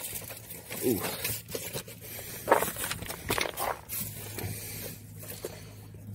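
Rummaging in a car interior: scattered knocks, clicks and rustles of things being moved about, with a brief 'ooh' from a man's voice about a second in.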